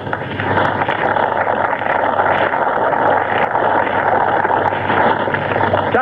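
A large crowd applauding steadily, a dense, even clatter of clapping on an old, narrow-band recording.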